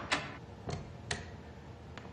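Three short, sharp clicks, a little under half a second apart, over a quiet room background.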